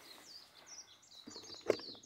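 Small birds chirping faintly in a string of short, high, rising and falling notes, with a brief low sound near the end.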